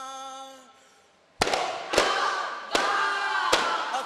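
A chorus of voices holds a long note that fades out; after a short pause, daf frame drums are struck together in sharp single beats about every three-quarters of a second, with group singing resuming between the beats.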